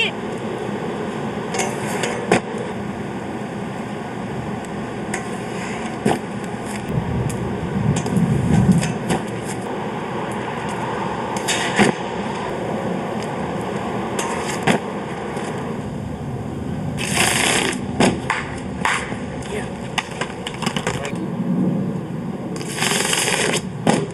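Steady hiss of an old camcorder recording, broken by scattered knocks and two short, harsh scrapes in the second half, of the kind soap-shoe grind plates make sliding on concrete.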